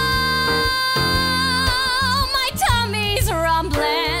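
A woman sings a long, high note with vibrato over a musical-theatre band accompaniment. About two and a half seconds in, her voice drops through a quick falling run, then settles into another wavering held note near the end.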